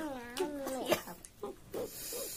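A drawn-out "mmm" of enjoyment while eating, about a second long with a wavering pitch, followed by a few faint mouth clicks and smacks of chewing.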